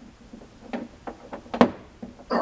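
Glass beer bottle knocking and clinking lightly against a tabletop as a gloved hand sets it upright and steadies it so it won't roll: a few soft knocks, the loudest about one and a half seconds in.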